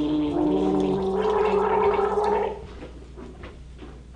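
A person gargling aloud, voicing one steady pitch through a mouthful of liquid for about two and a half seconds before stopping.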